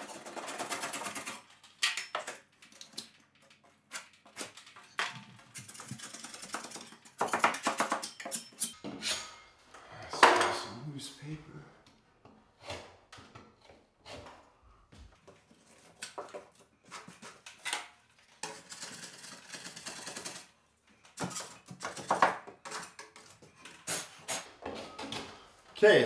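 Putty knife and utility knife blades scraping and cutting loose torn paper and crumbled gypsum from a damaged drywall edge, in irregular scrapes and scratches with short pauses between them.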